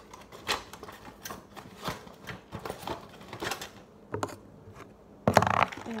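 Irregular light clicks and taps of small stationery items being handled and sorted over a pencil case, with a louder burst of handling noise lasting about half a second near the end.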